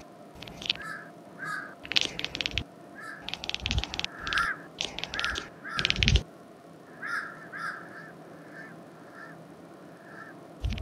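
Devon Rex cat chattering: bursts of rapid clicking, like a little machine gun, the cat's reaction to crows it is watching. Crows caw with short calls between the bursts. The chattering stops after about six seconds and the caws go on.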